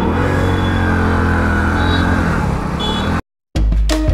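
Hero HF Deluxe's single-cylinder engine running as the motorcycle pulls away, its pitch rising a little and then settling. The sound cuts off abruptly near the end.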